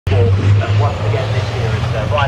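Volvo White Aerodyne race truck's diesel engine running as it passes, a loud, steady low drone.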